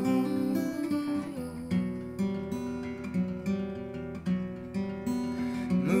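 Acoustic guitar strumming chords in a steady rhythm.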